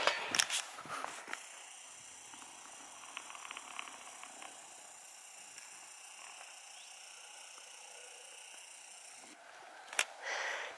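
Quiet outdoor ambience: a faint steady hiss, with a few clicks from the camera being handled in the first second or so.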